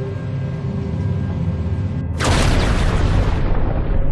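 Dark ambient background music with a steady low drone. About two seconds in, a sudden cinematic boom hits as a transition effect, and its hissing tail fades over the next second and a half.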